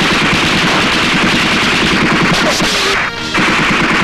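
Film sound effects of sustained automatic gunfire: a rapid, continuous stream of shots, broken briefly about three seconds in.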